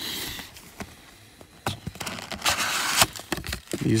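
Cardboard trading-card box being handled and opened by hand: a few light knocks and taps, then a short rasping rush of cardboard tearing or sliding about two and a half seconds in as the box top comes open.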